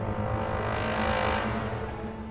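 Eerie background music: a low steady drone with a swelling whoosh that builds and then fades away near the end.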